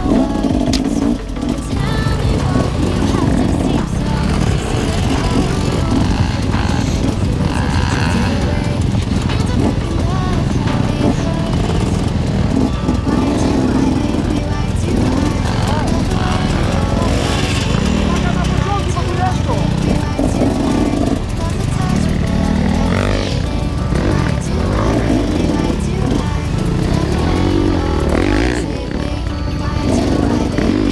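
Several enduro dirt bike engines revving up and down over rough ground, with music and voices mixed in.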